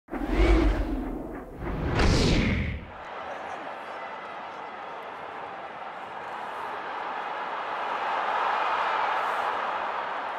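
Two whoosh sound effects with a heavy low end in the first three seconds. Then the steady noise of a stadium crowd, swelling slightly near the end.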